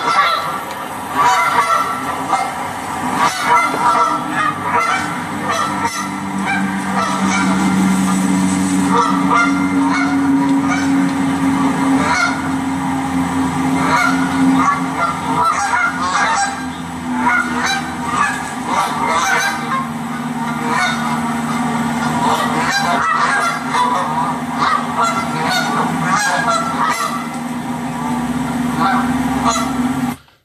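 A large flock of Canada geese on the ground: many birds honking, clucking and quarreling at once, in an overlapping, sporadic rhythm with no pause.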